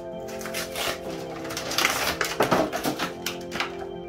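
Background music with steady held notes, over irregular crinkling and crackling of plastic packaging being handled as a Pokémon card box is opened. The crinkling is busiest around the middle.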